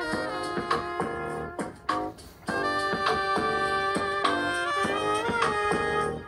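Upbeat music with a horn-led melody over a steady beat. It drops out briefly about two seconds in.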